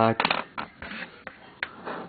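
Several sharp clicks of Go stones being handled and set down on the board.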